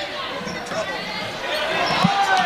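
A basketball being dribbled on a hardwood gym floor, with the noise of a crowd filling a large gym.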